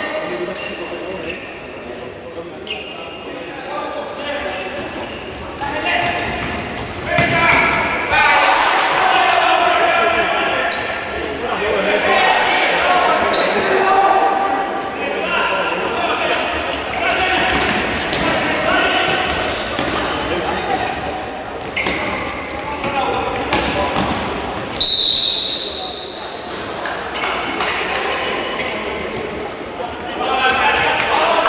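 A futsal ball being kicked and bouncing on a hard indoor court, with voices echoing around a large sports hall. A referee's whistle blows once, briefly, a few seconds before the end.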